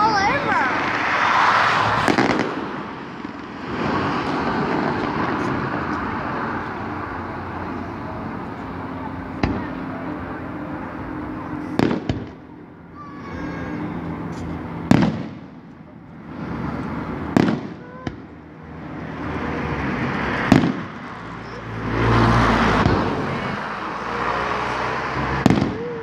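Aerial fireworks shells bursting, about six sharp bangs a few seconds apart over a steady background of crowd noise, with a low rumble near the end.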